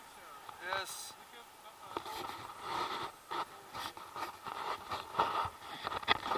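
Airflow rushing over an action camera's microphone during a tandem paraglider flight, with indistinct voices: one short voiced sound just under a second in and muffled talk through the second half.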